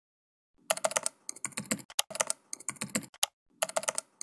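Computer keyboard typing: quick runs of key clicks in several bursts with short pauses between them, starting about half a second in.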